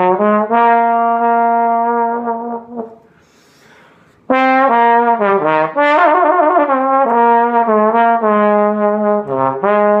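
Small-bore Olds Super trombone playing a slow jazz ballad melody solo: a long held note, a short pause, then a new phrase with a note given a wide vibrato about six seconds in, followed by a run of shorter notes.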